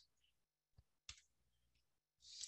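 Near silence, with one faint click about a second in: a computer mouse click advancing the presentation slide.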